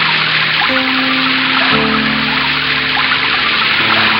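Steady water-pouring sound effect, a stream of water splashing down as from a watering can, over background music with sustained notes.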